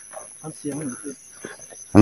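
Insects in the grass chirring steadily at a high pitch, under faint voices talking.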